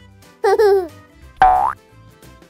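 Cheerful children's background music with two cartoon sound effects: a wobbling tone that falls in pitch about half a second in, then a quick rising boing-like glide about a second later.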